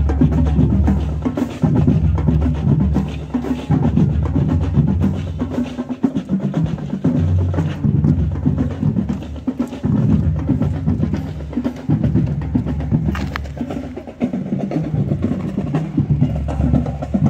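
Marching band drumline playing a marching cadence: snare drums over low bass drums, with sharp stick clicks.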